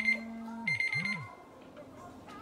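An electronic alarm-like ringing tone, high-pitched and rapidly pulsing, in two short bursts: one ending just after the start and a second about half a second later. Each burst has a low pitch sweeping up and down beneath it.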